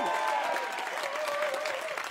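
Live audience applauding and cheering.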